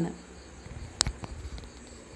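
Quiet background hiss with a faint, steady high-pitched tone and one sharp click about a second in.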